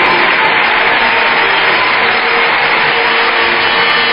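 Arena crowd applauding and cheering steadily.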